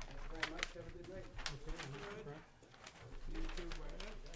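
Indistinct off-microphone conversation among a few people in a meeting room, with a few short clicks in the first half and a lull in the talk past the middle.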